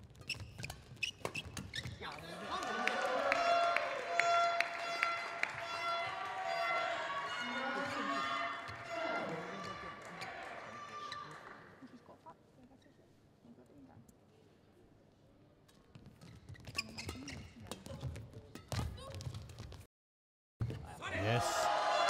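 Badminton rally: sharp strikes of the shuttlecock off rackets. The rally ends and about ten seconds of shouting and cheering voices follow. Near the end come a few more racket strikes as the next rally is played.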